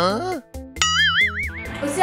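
Cartoon comedy sound effects: a quick boing that glides up and then falls back, and then about a second in, a warbling tone whose pitch wobbles up and down for under a second.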